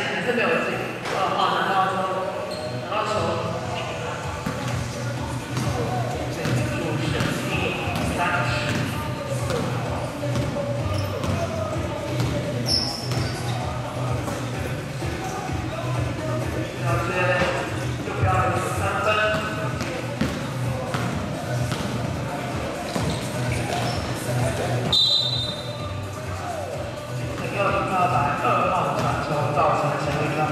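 Basketball bouncing on a gym floor during a game, with players' voices, all echoing in a large hall.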